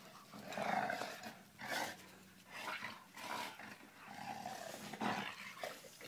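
Dogs play-fighting: a string of short, rough growls, about six in six seconds, as a husky-type puppy wrestles with a larger black dog and mouths her face.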